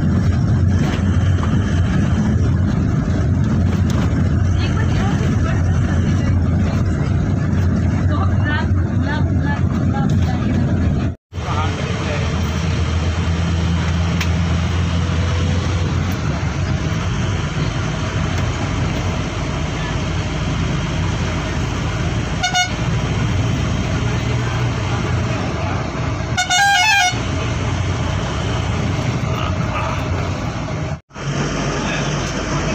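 Steady low engine and road rumble heard from inside a moving bus. A vehicle horn gives a short toot about two-thirds of the way through, then a longer honk of about a second near the end.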